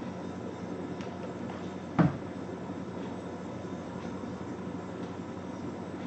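A hot glue gun set down on a table with a single sharp knock about two seconds in, over a steady low hum of room noise.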